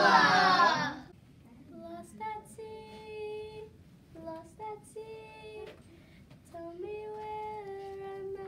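A loud group of children's voices ends a line in the first second. Then a single child's voice sings a slow melody of held notes, much quieter than the group.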